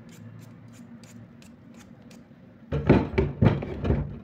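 Hand-held vegetable peeler scraping a potato in short, quick strokes, a faint click each stroke. Near the end, a run of several loud knocks and rustles.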